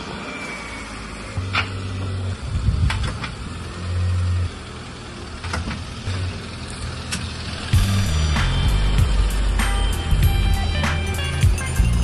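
Toyota hatchback's engine running as the car pulls away, getting louder about eight seconds in. Background music comes in at about the same time.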